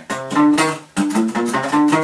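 Steel-string acoustic guitar playing single alternate-picked notes of a G natural minor scale on the A string: a short run of about six distinct notes, the last left ringing.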